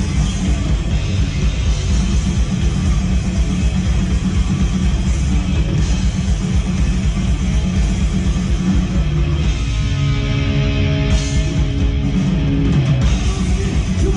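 Three-piece metal band playing live: drums, bass and guitar, loud and dense throughout, with a held chord ringing out about ten seconds in.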